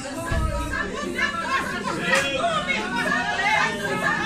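A church congregation praying aloud all at once: many overlapping voices, none of them clear.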